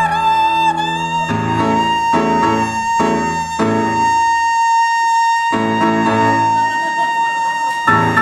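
Operatic soprano holding one long high note, slightly wavering at first and then steady, while a grand piano strikes a series of chords beneath it.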